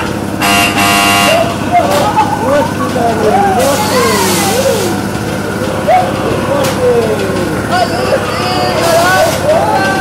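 A horn toots once for under a second about half a second in. Then voices call out in short rising-and-falling whoops over the steady hum of a running roundabout ride.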